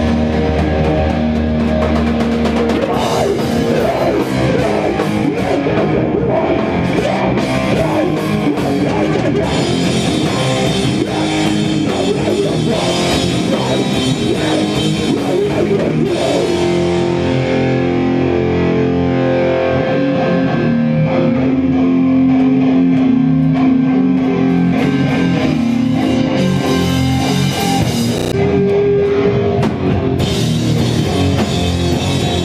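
Hardcore punk band playing live: distorted electric guitar and drum kit, loud and continuous, with long held chords in the second half.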